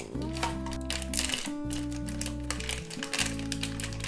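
A small cardboard blind box being opened and the foil bag inside crinkled in the hands, a run of quick crackles. Under it plays background music with long held notes.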